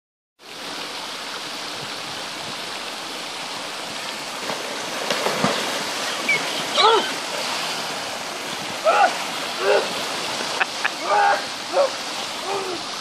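A man plunges through plywood boards into cold creek water about five seconds in, splashing and thrashing in the churning water, over a steady rushing background. Short shouts and gasps follow through the second half.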